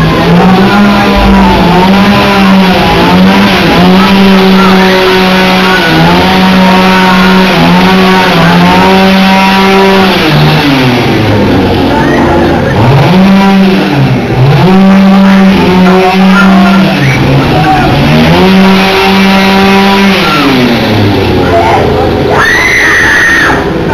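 A loud engine held at high revs. Its pitch drops and climbs back several times as the throttle is eased and opened again.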